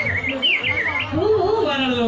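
Two short, high, warbling bird-like chirps in quick succession, followed by a voice speaking from about a second in.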